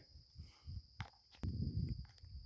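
Faint, steady high-pitched drone of insects, with a couple of sharp clicks about a second in and soft rustling near the end as the freshly caught fish and line are handled.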